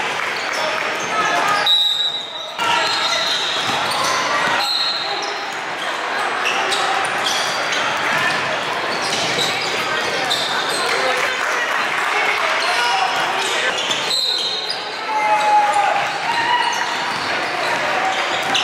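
Basketball game sound echoing in a gym: players and spectators talking, a basketball being dribbled on the hardwood floor, and a few short high sneaker squeaks.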